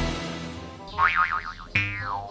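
Comedy sound-effect sting: a musical hit rings and fades, then a cartoon-style wobbling pitch sound about a second in and a falling slide-whistle-like glide near the end.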